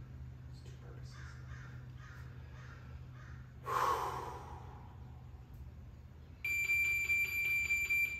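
An electronic workout-timer beep: one steady, high buzzing tone that starts about six seconds in and holds for about two seconds, signalling the start of the next timed interval. Earlier, about halfway through, there is a short loud breath-like burst.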